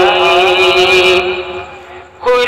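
Sung Urdu tarana: a voice holds the end of a sung line in a long, wavering note that fades away over the last half second.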